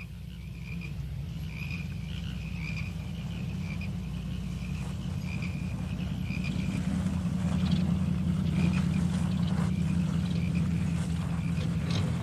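A night-time chorus of chirping creatures, frogs and insects, with repeated short high chirps over the low steady hum of a car engine that grows louder as the car approaches.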